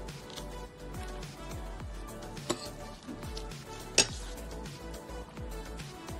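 Background music with a steady beat, with two sharp clinks of cutlery against a plate, about two and a half and four seconds in; the second clink is the louder.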